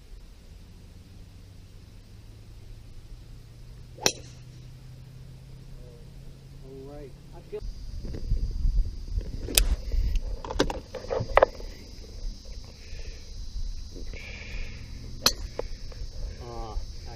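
A golf cart running with a low steady hum that stops about halfway through, then a few knocks and rattles close by. Near the end, a single sharp crack of a golf club striking the ball.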